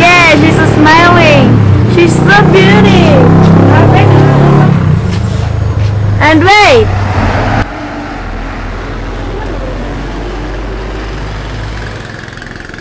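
Voices talking in short phrases for about the first five seconds, with one brief rising-and-falling exclamation about six and a half seconds in, over a steady low hum; quieter for the last four seconds.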